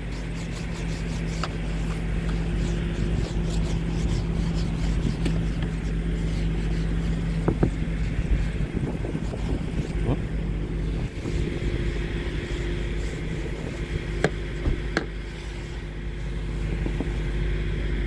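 A car engine idling steadily under the swish of a snow brush sweeping snow off the car's glass, stroke after stroke, with a few sharp ticks of the brush against the car.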